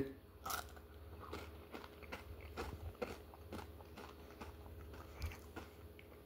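Faint crunching and chewing of an ice cream cone, about two crunches a second, as the chocolate-lined bottom of the cone is eaten.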